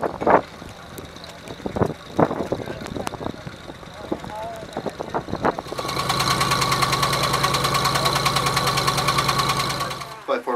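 Rail speeder pulling an open passenger car along the track, wheels knocking and clattering. From about six seconds in, the speeder's engine is heard close up, running with a steady, fast pulsing beat.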